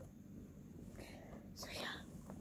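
Soft whispering, loudest in a short whispered stretch near the end.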